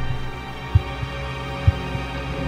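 Dark horror music: a sustained, droning pad with a low, heartbeat-like thump about once a second, twice here.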